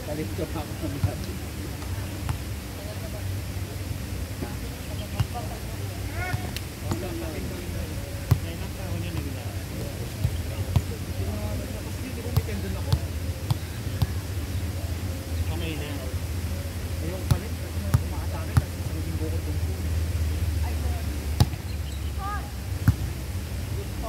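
Volleyball being struck by players' hands and forearms: sharp slaps at irregular intervals, a dozen or more through the stretch, over players' voices calling out and a steady low hum.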